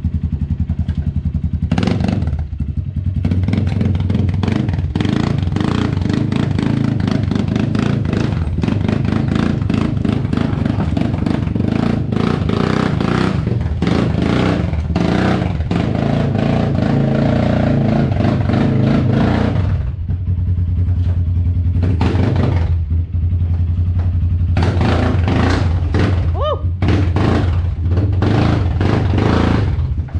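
Four-wheeler (ATV) engine running, working harder for several seconds in the middle and then settling back to a steadier run, with rattling and clatter over it.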